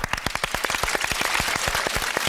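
Applause: several people clapping their hands, a dense, steady patter of claps.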